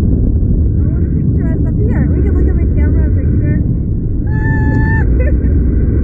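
Wind rushing over the microphone of a camera fixed to a SlingShot ride capsule as it swings high in the air: a loud, steady low rumble. A short, steady high note sounds about four seconds in.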